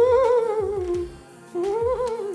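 A wavering, ghost-like "oooo" hum from a person's voice, made twice: each one rises and then falls in pitch with a quick wobble, the second starting about a second and a half in.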